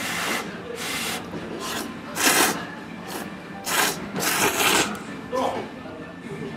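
A person slurping thick ramen noodles: several loud slurps in quick succession, the longest a drawn-out slurp about four to five seconds in.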